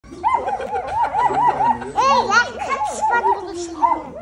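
Several puppies whining and yipping, a quick run of rising-and-falling high cries about four or five a second, with a few sharp upward yelps about two seconds in.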